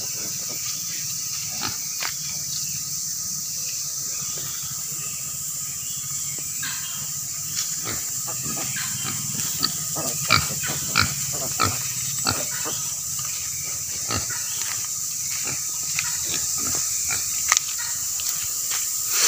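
A native black sow and her piglets grunting, the short grunts sparse at first and coming thick and fast in the second half.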